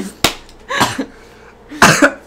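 A person coughing: a few short, sharp coughs with gaps between them, the loudest near the end.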